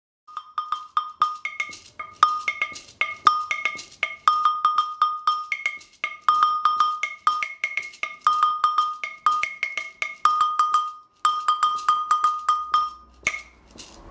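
West African agogo (gankogui) double bell of forged metal, struck with a wooden stick in a fast repeating rhythm. Most strokes ring on the lower, larger bell, with accents on the higher, smaller bell.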